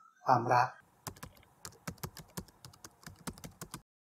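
A quick, irregular run of light, sharp clicks and taps, several a second, starting about a second in and stopping just before the end.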